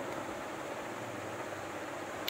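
Steady background hiss of room noise, with no distinct sounds in it.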